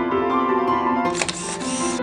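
A camera shutter sound effect, a click and a short burst of shutter noise starting a little over a second in, over gentle piano music.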